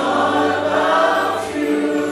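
Congregation singing a slow worship song together, many voices holding long sustained notes.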